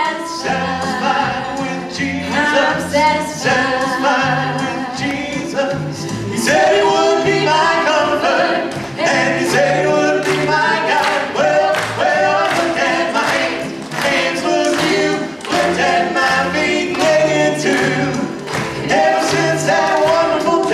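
A woman and a man singing a gospel song together into microphones, over instrumental accompaniment with a bass line and a steady beat.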